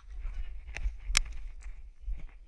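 Footsteps and scuffing on dry, loose earth over a low rumble, with a sharp knock a little over a second in.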